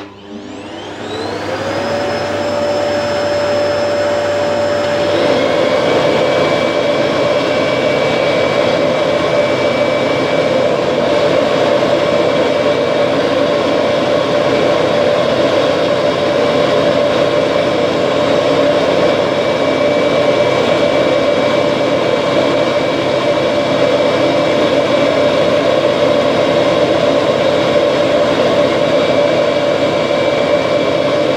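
Two vacuum cleaners, an Electrolux UltraFlex canister and a Kirby G2000 upright, are switched on for a suction tug of war over a piece of pipe between their nozzles. A switch clicks and the first motor spins up with a rising whine that settles in about two seconds. About five seconds in the second machine joins, and both then run together, steady and loud.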